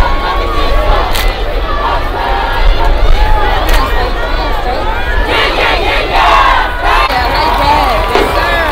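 Stadium crowd in the bleachers yelling and cheering, many voices shouting over one another, with a louder burst of shouts about five to seven seconds in.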